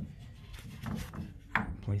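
Faint wooden knocks and rubbing as a homemade wooden spacer block is handled, pulled out and set against the next railing baluster.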